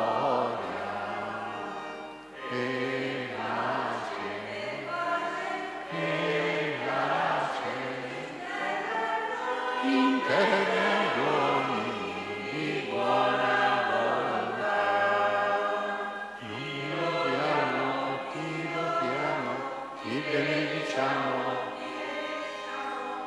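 Church choir singing a part of the Mass, in phrases of a few seconds each.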